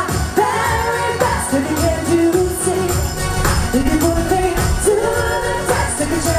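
Live pop music: a female vocal group singing into microphones over amplified backing, with a steady bass underneath.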